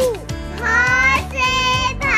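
A children's song: a child's voice sings held, gliding phrases over backing music with a steady beat.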